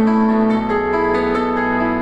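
Solo piano playing a slow introduction in held notes and chords.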